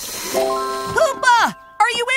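Cartoon soundtrack: a short hiss, then held musical notes that come in one after another like a rising chord, with a character's wordless sliding-pitch exclamations in the middle and again near the end.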